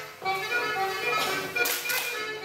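Breton folk dance music playing in a hall, with dancers clapping their hands in a quick cluster of claps about a second in.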